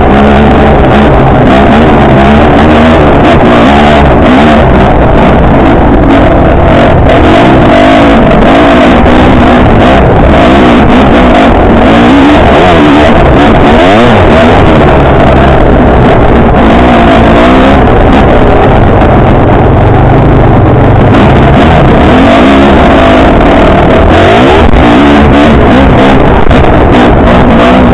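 Enduro motorcycle engine revving up and down continuously as the bike is ridden along a dirt trail, loud on the onboard camera's microphone.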